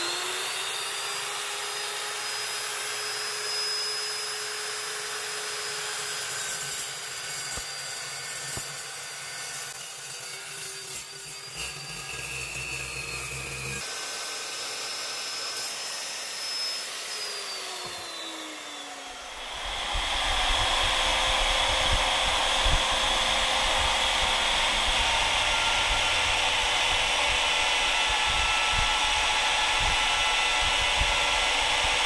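Evolution steel chop saw with its carbide-tipped blade running steadily and cutting through 3-inch angle iron, then winding down with a falling whine a little past the middle. From about two-thirds of the way in, an Evolution electromagnetic drill runs steadily and louder.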